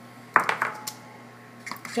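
A kitchen utensil knocking and clicking against a plastic mixing bowl as the Bisquick is beaten into the eggs and oil. One sharp knock comes about a third of a second in, followed by a few lighter clicks, with more clicks near the end as the mixing gets going.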